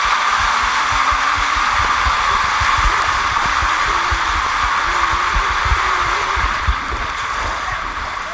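Water rushing down an enclosed water-slide tube as a rider slides through it: a steady hiss of water with irregular low thumps underneath, easing slightly near the end as the slide opens out.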